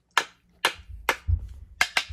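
Two flat wooden pieces knocked together, giving about half a dozen sharp, irregular clacks, with a dull low thump about a second and a quarter in.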